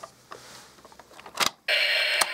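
Plastic Anpanman toy bus being handled, with faint scrapes and a sharp click about one and a half seconds in. Then, near the end, the toy's electronic sound effect starts: a loud noisy sound with a steady tone under it.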